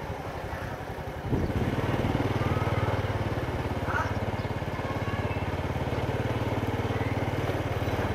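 Small motorcycle engine running at low riding speed, stepping up in level about a second and a half in and then holding steady.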